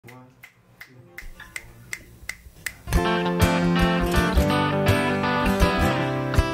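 A count-in of evenly spaced sharp clicks, nearly three a second. About three seconds in, a country-blues band comes in together with guitar, upright bass and drums.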